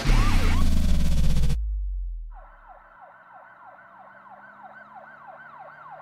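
Loud electronic intro music cuts off about a second and a half in, its bass note fading away. Then an emergency vehicle siren, much fainter, sounds in a rapid up-and-down yelp of about three cycles a second.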